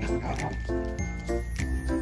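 Background music: a light, bouncy tune of short notes in a regular rhythm.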